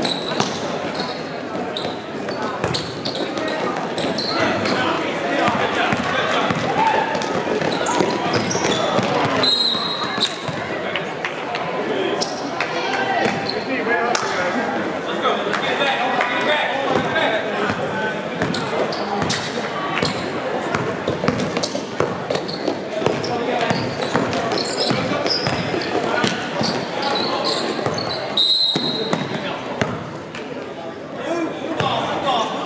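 Basketball game in a gym: a ball bouncing on the court and players' feet, under steady voices from players and spectators, all echoing in the hall.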